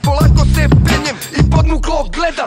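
Hip hop track: a male voice rapping in Serbian over a beat with heavy bass.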